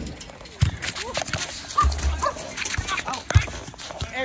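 Thuds of a soccer ball being kicked on artificial turf, a few sharp knocks a second or so apart, with short, sharp calls in between among players' voices.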